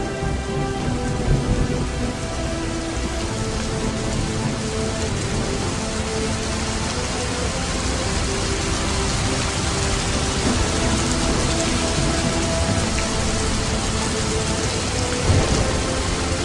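Steady rain-like hiss with low rumbles, a thunderstorm ambience over soft held music notes. There are brief louder swells about a second in and near the end.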